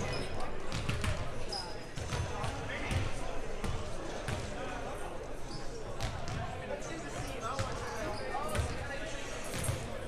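Basketballs bouncing on a hardwood gym floor during warm-ups, an irregular run of low thumps with sharp clicks among them.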